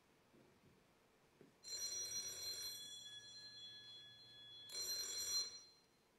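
A phone ringing: two rings, the first starting about a second and a half in and trailing off, the second shorter, near the end.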